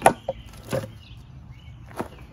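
Clunks and knocks of a metal transmission case half being handled and set down on a Honda CVT housing: one sharp knock at the start, then a few lighter ones. Birds chirp faintly in the background.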